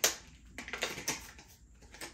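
Packaging of a grooming comb being torn open and crinkling: a sharp crack at the start, then a run of small crackles and clicks about half a second in.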